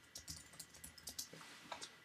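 Faint typing on a computer keyboard: a quick, irregular run of keystrokes.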